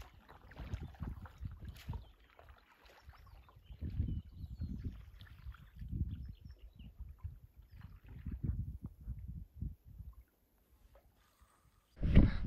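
Stand-up paddleboard paddling on calm river water: the paddle dipping and pulling through the water every couple of seconds, with soft splashing and lapping. It falls almost silent about ten seconds in.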